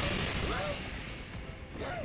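Anime fight soundtrack: a sudden crash at the start, then a dense rumbling noise with a creature's and a character's grunts.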